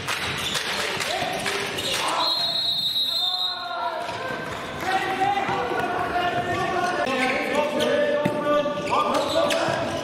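A handball bouncing on a sports-hall floor during play, with players' and spectators' shouts over it. A high held squeak runs for about a second, starting about two seconds in.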